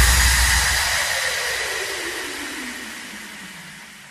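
End of an electronic dance track: a synthesized noise sweep falling in pitch while the whole sound fades out steadily.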